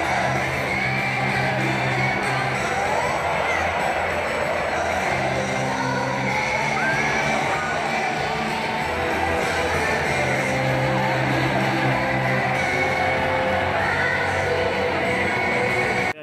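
Live J-pop concert music over an arena sound system: a woman singing into a microphone over a steady band backing, recorded from among the audience.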